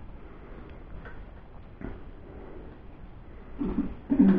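Quiet room with a few faint clicks of forks against ceramic plates while pancakes are cut and eaten, and a short murmured voice sound near the end.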